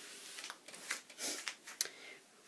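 Faint rustling of fabric strips being slid by hand across a tabletop, with a few light ticks.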